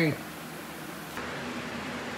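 Quiet, steady room noise with no distinct events; its character shifts abruptly about a second in, where the recording cuts. No engine is running.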